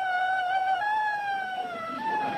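A dog howling in long, high, held notes, with a short break about a second in before a slowly falling howl.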